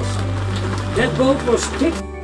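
Background music: a voice singing over sustained low bass notes, the bass note changing about a second in.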